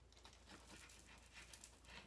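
Near silence, with the faint rasping strokes of a kitchen knife sawing through a rolled tortilla wrap on a cutting board.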